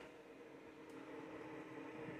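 Faint steady hum with a low steady tone, little more than room tone.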